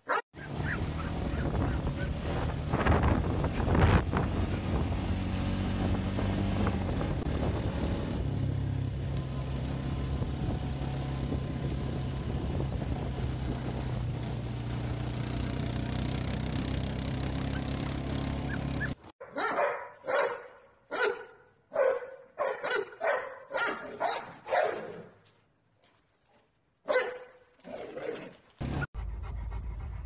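Steady rumbling noise for most of the first two-thirds. After a sudden cut, a dog barks in quick repeated barks, about two a second, with a short pause and a few more barks near the end. The barks are the loudest sound.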